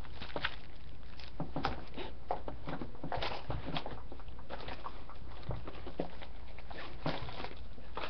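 Rustling and crinkling of sticker sheets in clear plastic sleeves being pulled out of a bag and handled, an uneven run of small crackles and ticks.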